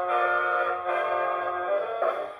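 Dance-band orchestra playing an instrumental passage of sustained chords from a 78 rpm record on a Kompact Plaza compact gramophone, heard through its metal horn with a narrow tone lacking high treble.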